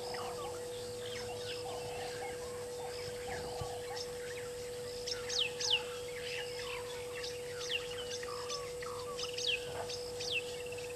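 Wild birds calling at dusk: many short, sharp, falling whistled calls, loudest about five seconds in and again near the end, with softer lower calls in the first few seconds. A steady hum runs underneath.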